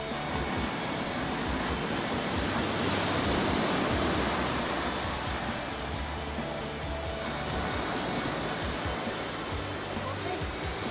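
Ocean surf washing onto a sandy, rocky beach, a steady rush that swells slightly about three to four seconds in, with low background music underneath.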